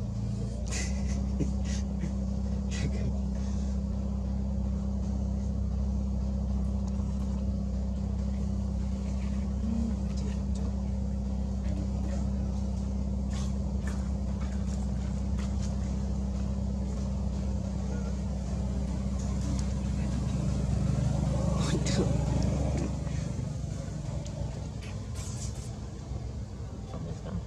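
A motor vehicle's engine idling steadily as a low hum. It swells briefly about twenty seconds in, then fades away near the end. Scattered short clicks sound over it.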